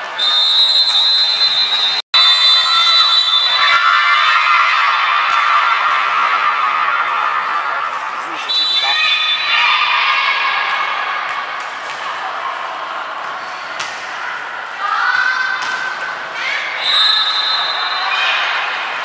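High-pitched women's voices shouting and cheering together in a large, echoing sports hall, with a few sharp knocks of a volleyball being struck.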